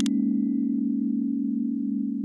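Synthesized intro tone: a sustained low chord of a few steady pitches with a slow pulsing beat, slowly fading.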